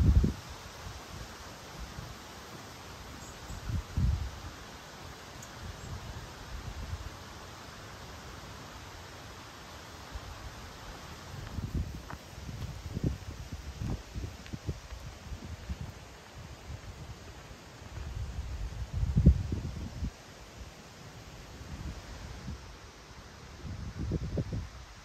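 Outdoor ambience of wind rustling the leaves of trees, with a steady faint hiss and several irregular low gusts buffeting the microphone, the strongest a little before the end.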